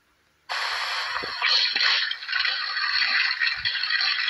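Cartoon sound effect of roller skates rolling: a loud, steady scraping rattle that starts suddenly about half a second in, after near silence.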